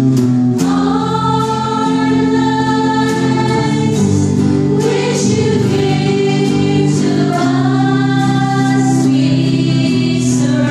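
Small amateur choir, mostly women's voices, singing a worship offertory song in long held notes ("our lives which you give to us, we surrender"), accompanied by electric and acoustic guitar.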